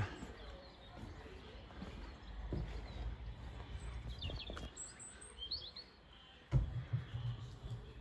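Faint outdoor background with a low rumble and a few short bird chirps in the middle. A brief, louder low bump comes about two-thirds of the way through.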